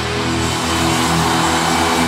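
Live rock band holding one loud, sustained distorted chord on electric guitar, with no drum beats.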